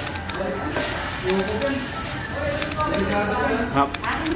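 People talking in a busy restaurant, voices running through the whole stretch, with a short exclamation near the end.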